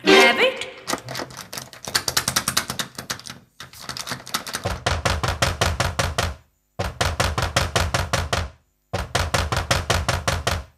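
Rapid drumbeats in the dance music, about seven strikes a second, in phrases broken by brief dead silences.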